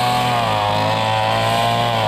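A small engine running steadily at a constant speed, its pitch wavering slightly up and down.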